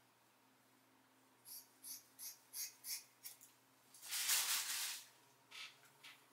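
Scissors snipping through hair, about six quick cuts roughly a third of a second apart, then a louder rush of noise lasting about a second.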